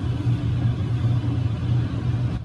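A steady low hum, even and unchanging, in a pause between words.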